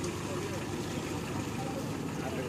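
Small pickup truck's engine running as it pulls away slowly, with voices in the background.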